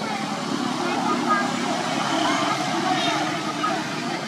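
Indistinct voices talking in the background over a steady low rumble.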